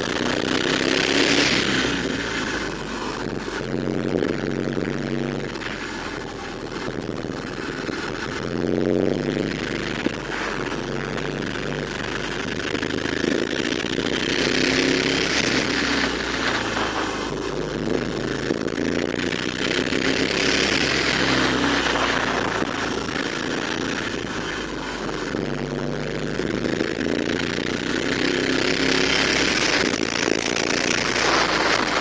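Motorcycle engine running under way, its pitch climbing and dropping again and again with throttle and gear changes. Several times, wind rushes over the microphone in gusts.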